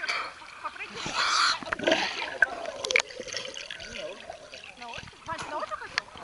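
Water splashing and sloshing in irregular bursts right at the microphone, as from a camera held at the water's surface, with people's voices in the background.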